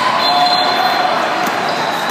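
A basketball being dribbled on a modular sport-tile court, a few bounces in the second half, over the steady din of voices in a large hall.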